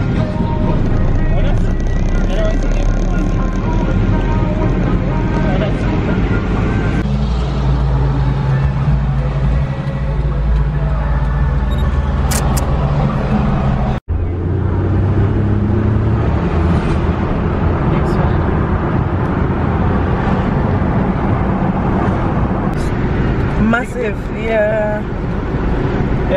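Steady engine and road noise inside a moving car's cabin, with a low drone; the sound changes abruptly about halfway through. A voice is heard briefly near the end.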